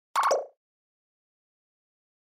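Short pop sound effect for an animated logo sting, lasting under half a second and stepping down in pitch.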